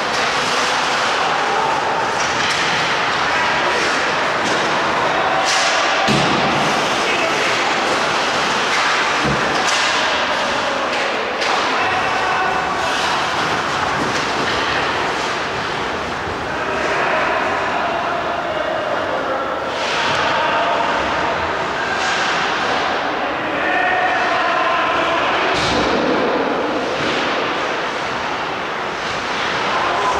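Ice hockey game heard from rinkside: skates scraping on the ice, with several sharp knocks of sticks and puck against the boards and players' shouts.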